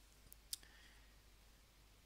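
Near silence, broken by two short clicks close together about half a second in.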